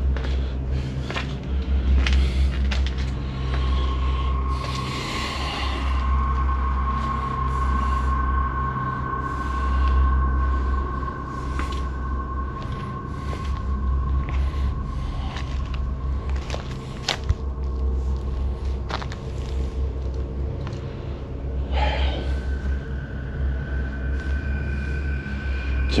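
Footsteps crunching and knocking over debris on a littered floor, with one sharper knock about two-thirds of the way through, over a steady low rumble. A faint, steady high tone runs through most of it.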